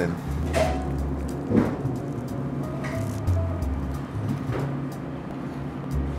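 Background music: a deep bass line of held notes, with a few sharp percussive hits.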